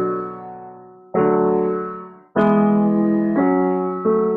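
Piano chords played one after another in the melody's rhythm: the teacher's sketch of a brass chorale. One chord rings on at the start, then new chords are struck about a second in, near two and a half seconds and near three and a half seconds, each fading slowly until the next.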